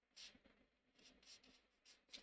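Faint strokes of a marker tip rubbing on sketchbook paper: one stroke just after the start, a quick run of short strokes around the middle, and another near the end.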